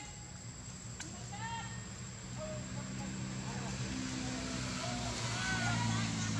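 Baby macaque giving several short, high cries that rise and fall in pitch, a few of them close together near the end. Under them runs a low steady hum.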